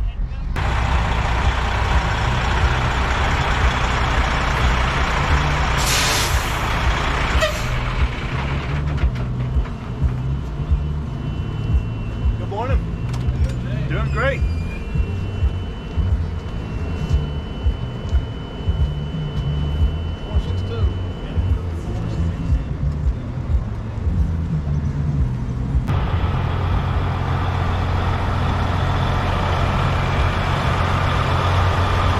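Big-rig diesel engine idling with a steady low rumble, with two short sharp hisses of compressed air about six and seven and a half seconds in.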